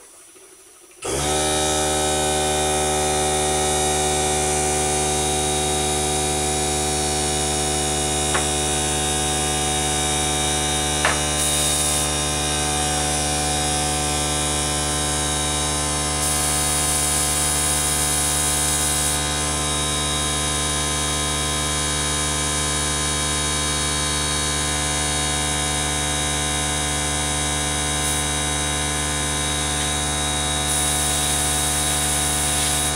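Small airbrush air compressor switching on about a second in and humming steadily, with short hisses of air from the airbrush now and then.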